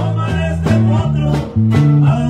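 Live norteño-style band playing an instrumental passage: a button accordion melody over strummed guitar and a bass line moving in steady beats.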